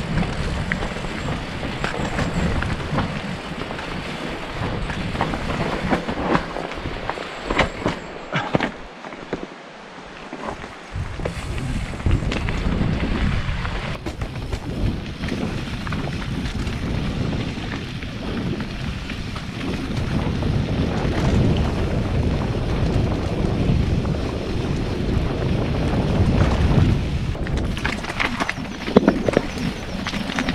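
Mountain bike riding down a rocky singletrack: wind rumbling on the microphone, with tyres on stones and the bike rattling in frequent knocks over the bumps, briefly quieter about a third of the way through.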